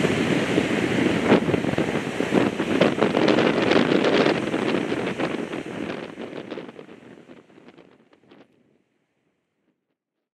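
Ocean surf breaking on a beach, with wind buffeting the microphone; the sound fades out and is gone about eight and a half seconds in.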